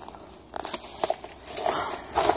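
Footsteps crunching and scraping on loose limestone rubble while picking a way down a steep slope, a string of short crunches that gets busier about half a second in.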